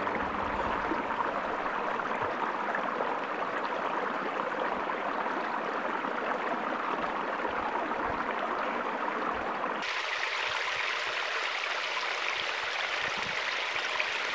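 Steady rushing of a creek over rocks; about ten seconds in the sound turns thinner and hissier.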